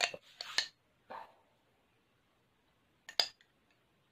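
A few short handling sounds, then about three seconds in a sharp double clink of a utensil against a glass jar.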